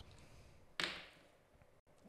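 Two dice thrown onto a gaming table: one short clatter about a second in, then fading.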